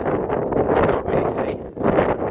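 Wind buffeting the microphone, a loud rushing noise that rises and falls in gusts.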